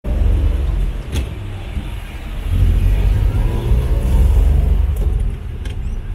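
Engine and road rumble of a moving vehicle heard from inside the cabin, steady and deep, with a short sharp click about a second in.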